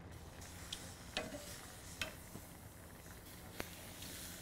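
Simmered bratwursts sizzling faintly as they are laid on a hot grill grate, with a few sharp clicks of metal tongs against the grate.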